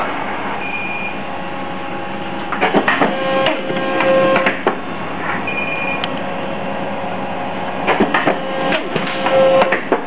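Polar 92 EMC guillotine paper cutter running a programmed cut sequence: a steady machine hum, with a short high beep about a second in and again about halfway. Each beep is followed a couple of seconds later by about two seconds of mechanical clattering and whining as the cutter works through its cycle.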